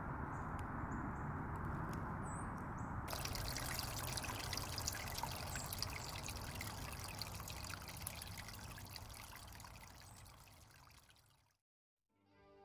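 Steady outdoor background noise, an even hiss. About three seconds in it turns brighter, with many faint ticks, then it fades away to silence just before the end.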